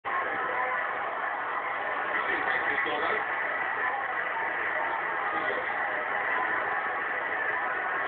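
Football stadium crowd noise on a match broadcast: a steady din of many voices with no sudden peaks.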